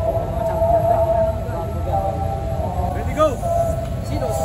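Voices of a small group of people gathered close by, over a steady wavering hum, with a short rising-and-falling vocal sound about three seconds in.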